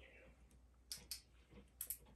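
A few faint, sharp clicks of tableware being handled during a meal, coming in two close pairs about a second apart.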